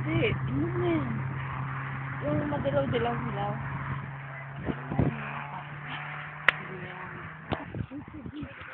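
Faint voices over a steady low hum, with a few sharp knocks; the hum stops near the end.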